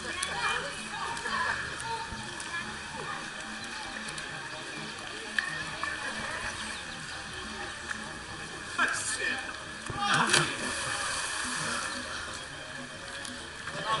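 Splashes into a swimming pool: two splashes about nine and ten seconds in, the second the louder, over a steady murmur of voices and water.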